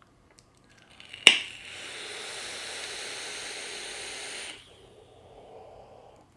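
Kanger Dripbox squonk mod firing its 0.2-ohm dual-coil RDA: a click, then about three seconds of steady hissing as the vaper draws through the atomizer. A softer, breathy exhale follows near the end.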